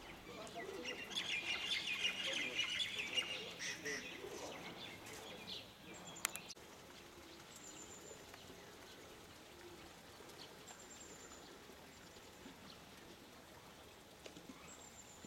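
Birds chirping in a dense, busy chatter for the first few seconds, then a click and an abrupt cut to quieter outdoor ambience with a few brief, high single chirps.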